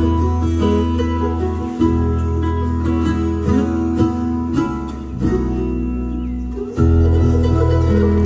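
Bluegrass band playing an instrumental passage with no singing: fiddle, five-string banjo, acoustic guitar, mandolin and electric bass. Held bass notes and chords change about two and five seconds in, and a louder full chord comes in near the end.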